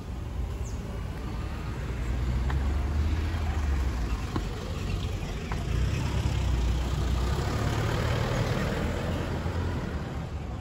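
Street traffic: cars passing on a town street, their engine and tyre noise swelling about two seconds in and again around the middle.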